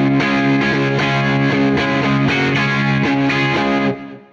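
Harmony Jupiter Thinline hollow-body electric guitar with gold foil pickups, tuned to open E, playing a ringing chordal part with repeated strums that stops just before the end.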